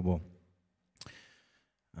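A man's speech into a microphone breaks off on one word, then after a pause comes a single sharp click about a second in, trailing into a short hiss.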